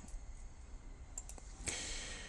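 Low room tone with a few faint clicks a little past the middle, then a soft hiss near the end.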